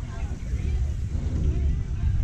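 Low, uneven rumble of wind on the microphone, with faint voices of people talking in the distance.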